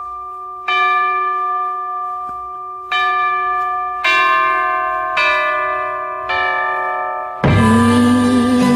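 Bell-like chimes in an early-1960s pop recording, struck five times about one to two seconds apart, each note or chord ringing and fading slowly. Near the end the full band comes in, louder.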